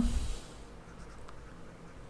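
Faint scratching of a pen or stylus handwriting a word, over quiet room tone.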